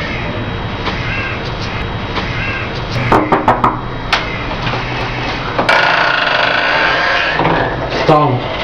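A few sharp knocks on a wooden door about three seconds in, with one more a second later, over a steady low hum. Near the end comes a sudden, louder stretch of noise lasting over a second, as the door is opened.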